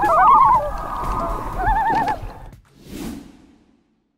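A loud, quavering animal call played as a sound effect: two rapid trills with a steadier high note between them. It is followed about three seconds in by a brief soft whoosh that fades out.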